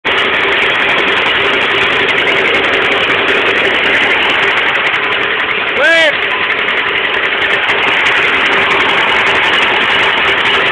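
A 1936 John Deere two-cylinder tractor engine running steadily while the tractor drives along, heard close up from the seat. A short shout of "hey" comes about six seconds in.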